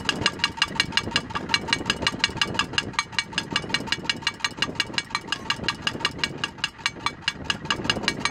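Wind-spun propeller noisemaker whose beater strikes a metal can, giving a fast, even clatter of about six ringing knocks a second.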